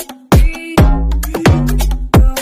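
Electronic dance music: a heavy kick drum about twice a second over sustained bass notes, with a rising synth sweep in the first half.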